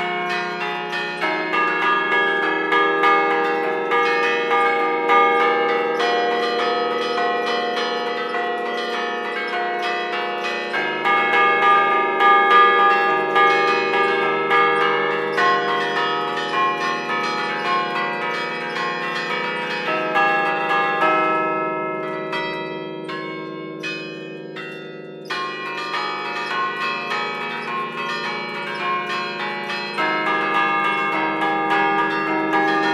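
Church bells played by hand from a bell keyboard (tastiera) in the Bergamasque style: a quick melody of struck notes ringing over one another, heard close up in the belfry. About two-thirds of the way through it thins to a few sparser, higher strokes, then the full sound returns.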